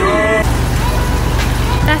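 Steady low rumble of vehicle noise, cutting in abruptly about half a second in.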